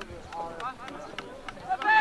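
Voices of people on and around a football pitch calling out during play, getting louder near the end, with a few short sharp knocks.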